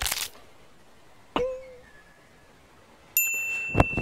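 A short swish, then about a second and a half in a single bell-like ding that rings and fades. It is the kind of notification bell used with an on-screen subscribe-button animation. A sharp click comes near the end.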